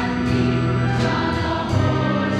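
Choir singing with instrumental accompaniment in sustained notes: background music.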